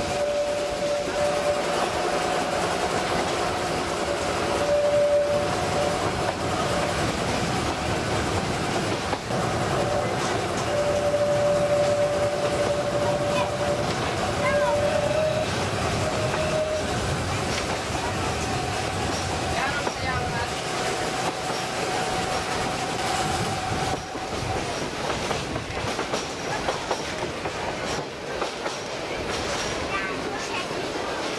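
Narrow-gauge railway carriage running along the track, its wheels clattering on the rails. A long, steady, high wheel squeal comes and goes over the noise and stops about three-quarters of the way through.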